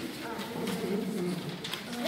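Low murmur of voices in a small room, with the light rustle of paper ballots being sorted and stacked by hand.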